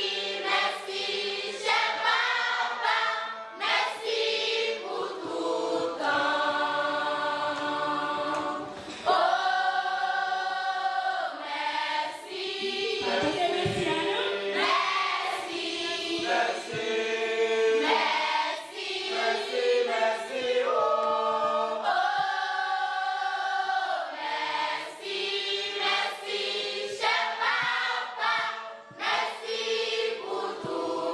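Youth choir, mostly girls' voices, singing together in a reverberant hall, phrases ending on several long held notes.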